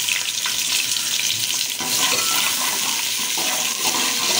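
Chopped onions sizzling in hot oil in a metal pot, stirred with a metal ladle that gives a few light knocks against the pot.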